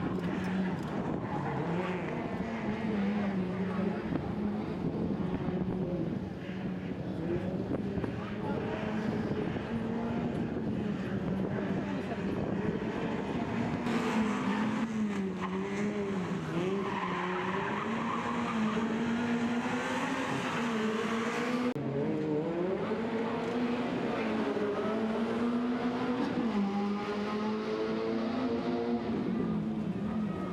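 Peugeot 106 rally car's four-cylinder engine revving up and down repeatedly through gear changes and lifts as it is driven hard. A stretch of tyre squeal comes in about halfway through as it turns tight around the barriers.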